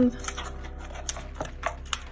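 Hands rummaging in a cardboard box and picking up a small plastic-wrapped candy packet: about half a dozen light, irregular clicks and crinkles.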